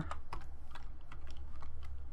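Computer keyboard typing: irregular keystroke clicks, a few per second, over a low steady hum.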